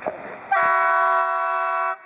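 PKP Cargo ET22 electric locomotive sounding its horn: a single loud, steady blast of about a second and a half that starts half a second in and cuts off just before the end.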